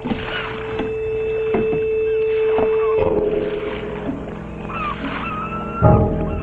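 Harbour sound effects: a ship's horn holds one steady note for about three seconds, then gulls cry in short calls. A single thump comes near the end.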